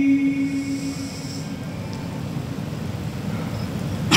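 The end of a long, held note of a man's Quran recitation through a microphone, fading out within the first second and a half, followed by low, steady background noise.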